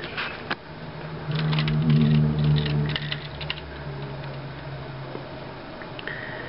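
Hard plastic clicks and rattles of a toy robot's parts being handled, clustered from about one and a half to three and a half seconds in, over a steady low hum.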